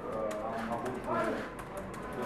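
Speech: a man's voice talking in a room, with a few faint clicks.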